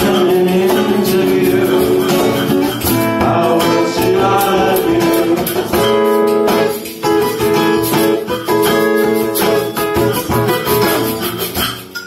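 Live band music: a guitar played over a cajon beat, with some singing.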